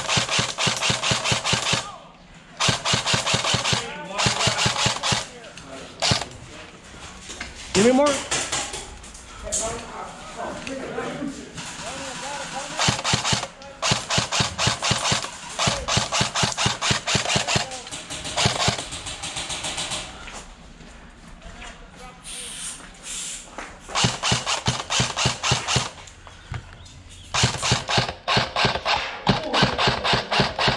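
Airsoft rifle firing repeated full-auto bursts, each lasting one to two seconds, separated by short pauses, with a longer lull past the middle.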